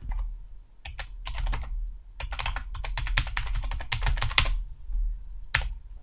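Typing on a computer keyboard: a run of quick keystrokes over about four seconds, entering a short two-word name, then a single click near the end.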